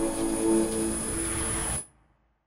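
Logo outro sting: a sustained synth chord with a thin high steady tone over it, cutting off abruptly near the end.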